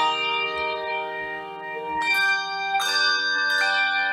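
Handbell choir ringing a piece on brass handbells: a chord struck at the start rings on for about two seconds, then new chords follow in quicker succession, each ringing over the last.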